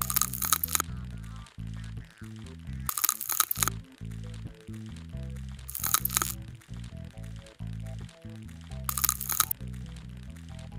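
Crisp crackling and crunching sound effect of bugs being scraped away with a scalpel, in four short bursts about three seconds apart. It plays over background music with a steady low bass line.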